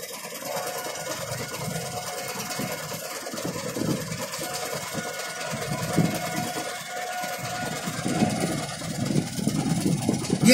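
Fire engine idling steadily, a low rumble with a thin steady tone above it.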